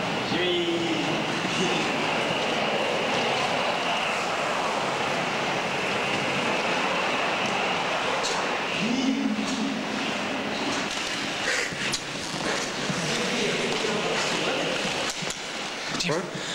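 Inline skate wheels rolling steadily over concrete, a continuous rolling hiss that echoes in an underground carpark.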